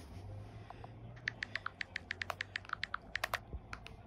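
Smartphone keypad clicks as digits are tapped in, a quick run of about a dozen and a half taps that starts about a second in and lasts some two seconds.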